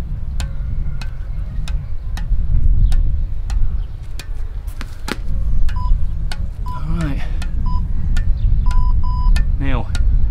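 Squash ball bouncing on the strings of a squash racket, a sharp tap about three times a second, over wind rumbling on the microphone. Past the middle, short electronic beeps from a countdown interval timer sound a few times, with a quick double beep near the end.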